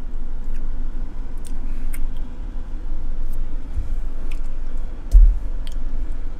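A person sipping an iced coffee drink through a straw and swallowing, with faint scattered mouth clicks over a steady low rumble. A low thump comes about five seconds in.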